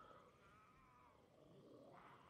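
Near silence, with only a faint wavering high tone in the background.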